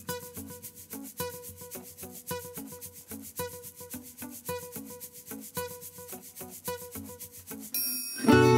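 Sound effect under a glitch-style logo animation: a rapid, even ticking with a short pattern of pitched tones repeating about once a second. It stops just before the end.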